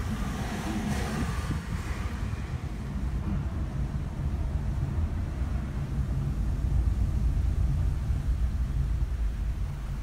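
Steady low rumble of a car's engine and tyres heard from inside the cabin while driving along a road.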